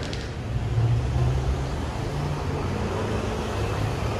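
Street traffic: a steady low rumble with a vehicle engine hum, loudest about a second in.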